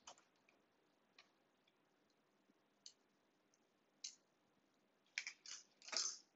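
Faint, scattered clicks of small metal parts (nuts, bolts and perforated strips of a metal construction kit) being handled and fitted together by hand, with a quick run of several clicks near the end.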